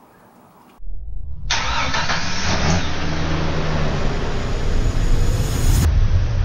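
A vehicle engine starting a little under a second in, then running loudly and steadily with a slight rev.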